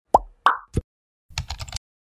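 Animated-intro sound effects: three quick pops, then about half a second of rapid keyboard-typing clicks.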